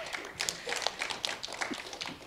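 Light, scattered clapping from a small audience, irregular single claps rather than full applause, with faint voices underneath.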